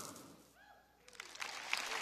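Faint audience applause: after a brief near-quiet moment, a soft clapping haze swells up in the second half.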